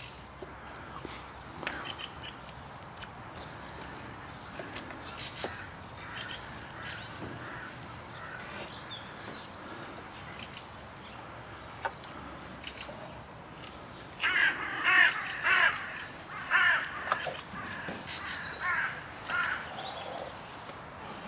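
A crow cawing about six times in quick succession in the last part, the loudest sound here. Earlier there are only faint scattered clicks and scrapes, as of wood being gnawed as the bears chew a stick.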